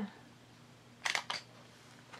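Three quick sharp clicks about a second in, from a small item being handled.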